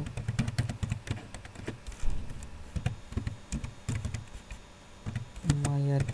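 Computer keyboard being typed on: irregular runs of clicking keystrokes.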